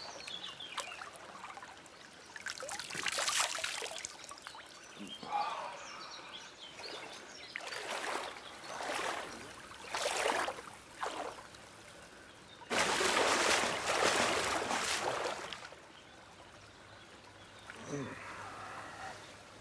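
Shallow pool of cold spring water being splashed by hand, in several separate bursts of splashing, the longest and loudest in the second half, with a faint trickle of running water between.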